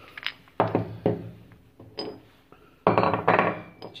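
Metal parts of a scooter's front variator clinking and knocking as the pulley and its roller weights are handled and set down on a wooden table. One sharp ringing clink comes about halfway, and a longer, louder rattle about three seconds in.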